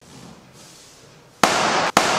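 A balloon packed with about a thousand super balls bursting: a sudden loud, crackling rush of noise about a second and a half in, broken by a brief gap just before the end.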